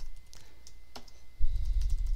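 Typing on a computer keyboard: a scattering of light key clicks. A low rumble comes in about one and a half seconds in.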